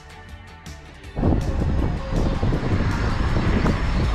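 Soft background music with a light, regular beat, then about a second in a loud rumbling rush of wind on the microphone and a moving car's road noise cuts in over it.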